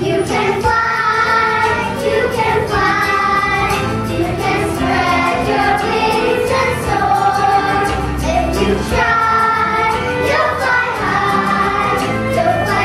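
A group of young children singing a song together over instrumental accompaniment.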